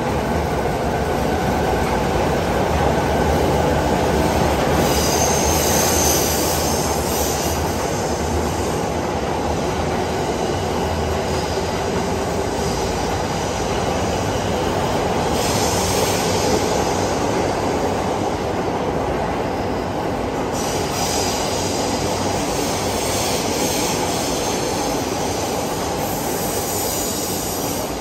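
JR East E217 series electric train pulling out of an underground platform and running steadily past as it gathers speed. Its wheels squeal on the rails, high-pitched, around five seconds in and again through most of the second half.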